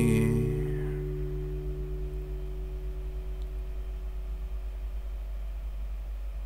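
The final strummed guitar chord ringing out and fading away over the first couple of seconds, a few low notes lingering a little longer, then a steady low hum.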